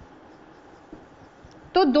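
Marker pen writing on a whiteboard: faint, soft scratching strokes as a word is written out, with a small tick about a second in.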